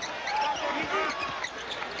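Basketball shoes squeaking on a hardwood court during live play: many short rising and falling squeaks over steady arena crowd noise.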